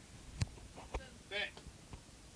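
Three short, sharp knocks, the first the loudest, with a brief vocal sound between the second and third.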